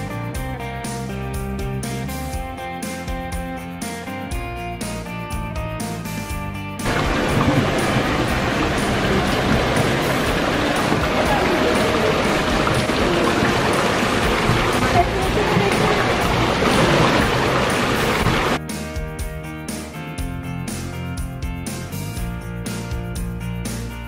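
Light background music with a guitar, which gives way about seven seconds in to the steady splashing of a small waterfall running over rocks, with people's voices in the background; the music comes back near the end.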